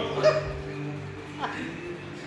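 Dog barking: a loud bark about a quarter second in, then a shorter, fainter one about a second and a half in.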